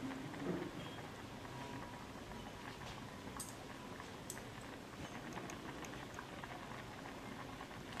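Fish stew boiling in a clay pot: faint, steady bubbling with a few small pops.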